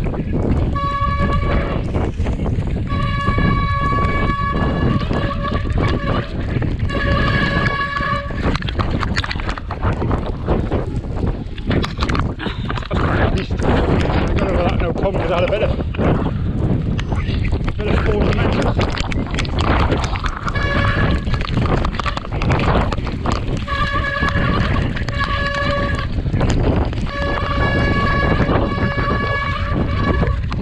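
Wind buffeting the microphone over the knocks and rattles of a mountain bike rolling down a rocky trail. A steady high whine with overtones comes and goes, sounding for most of the first eight seconds and again through the last third.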